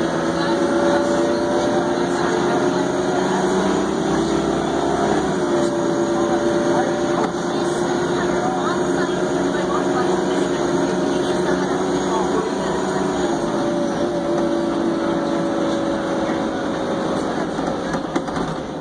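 Crown Supercoach Series 2 school bus's diesel engine running under way, heard from inside the cabin as a steady whine. The pitch climbs slowly and drops sharply about five seconds in, with a smaller drop near thirteen seconds.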